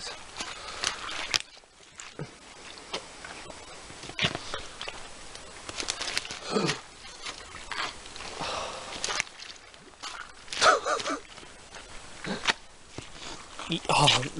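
Boots squelching and sucking in deep, sinking mud with irregular footsteps, along with a few short grunts and breaths of effort.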